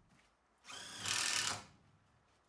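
Cordless drill running in one burst of about a second, worked into the wooden window frame overhead.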